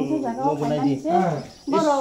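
Several people talking, men's and women's voices, with a short lull about three-quarters of the way through.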